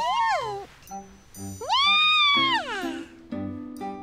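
A cartoon kitten's voiced meows: a short falling meow right at the start, then a longer one that rises, holds and falls away about a second and a half in. Light background music plays underneath.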